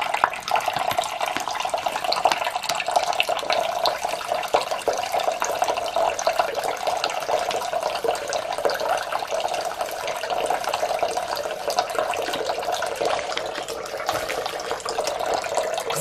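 Bathroom sink tap running steadily into a plugged basin, the stream splashing into the water as the basin fills.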